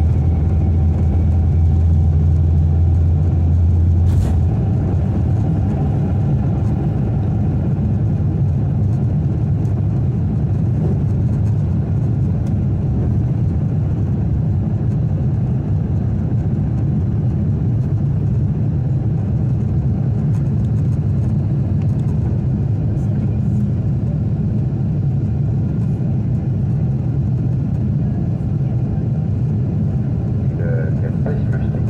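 Cabin noise of a Boeing 747 at takeoff thrust, heard from a window seat over the wing: a deep, steady engine roar. For the first few seconds a heavier runway rumble runs under it and stops with a single knock about four seconds in, as the jet lifts off. The engines then hold a steady roar through the climb.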